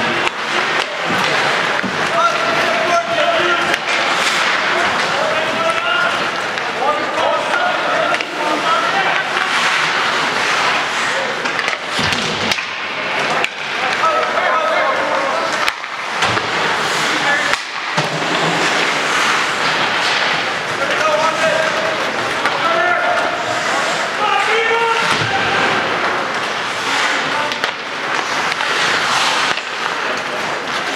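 Ice hockey in play: skates scraping across the ice and sharp clacks of sticks and puck, under indistinct talk from nearby spectators.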